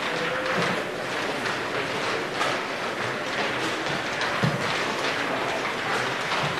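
Open-air football pitch ambience: a steady rushing noise with faint distant shouts, and a few dull thuds, the clearest about four and a half seconds in.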